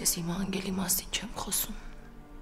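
A woman speaking a few soft words that end shortly before the close, over a faint, steady music bed.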